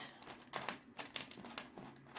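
Faint handling noise: scattered small clicks and rustles as a steel link bracelet with mother-of-pearl inlays is picked up and moved on a wooden tabletop.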